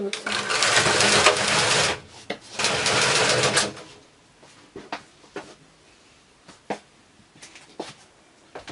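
Double-bed knitting machine carriage pushed across the needle beds twice, back and forth, each pass a loud rasping run of about one and a half seconds, knitting rows at a tightened stitch density. Then come a few light clicks from the machine.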